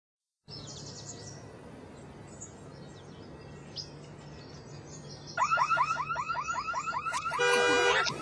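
Faint birds chirping, then about five seconds in a car alarm goes off. It gives a fast repeating warble of about six sweeping chirps a second, then switches near the end to a steady multi-tone blare.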